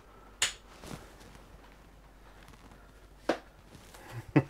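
Quiet room tone in a small enclosed room, broken by two sharp clicks, about half a second in and again near the end, with a fainter click at about a second.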